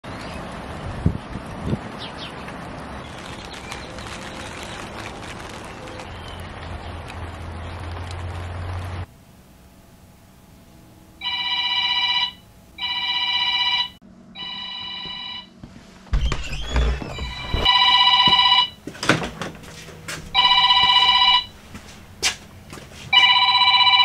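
Steady rain hiss for about the first nine seconds, then a mobile phone ringing: six ring bursts about a second long, in a group of three and then three more spaced further apart.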